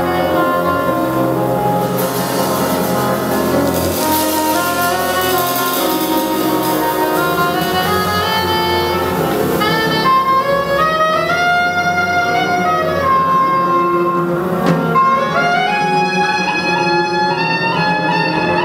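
Live jazz quintet playing: long held saxophone and trumpet notes that step up and down in pitch, over piano, double bass and drums.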